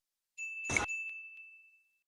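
Notification-bell sound effect: a click, then a single high ding that rings on steadily for over a second, with a couple of faint ticks.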